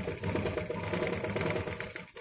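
Sewing machine running at steady speed, stitching through fabric with a fast, even mechanical chatter that eases off near the end.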